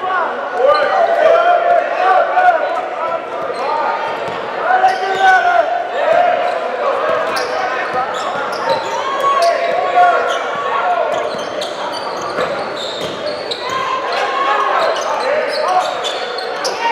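Basketball game play in a gym: a basketball bouncing on the court, with short sharp knocks scattered throughout, under steady voices of players and spectators echoing in the large hall.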